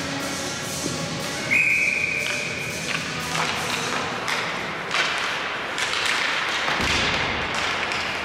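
Ice hockey play: sharp clacks and knocks of sticks and puck, with skates on the ice, coming in a series from about three seconds in. A loud, steady high whistle-like tone sounds for over a second about a second and a half in, and faint music trails off at the start.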